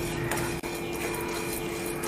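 Coriander seeds and whole spices dry-roasting in a pan as they are stirred: a steady hiss with a few light clicks.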